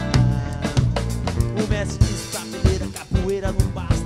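Live band playing funky, soulful Brazilian music: electric guitar over a drum kit keeping a steady beat.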